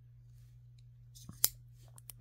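Coast serrated lockback folding knife being opened: a couple of faint clicks, then one sharp click about one and a half seconds in as the lockback catches the blade.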